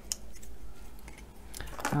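Faint handling noises as a pair of scissors is picked up and brought to a plastic-wrapped poster roll, with one sharp click just after the start.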